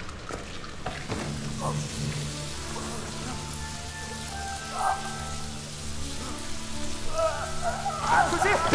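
Film soundtrack: low sustained music tones from about a second in, with higher held notes joining midway, over a steady crackling hiss.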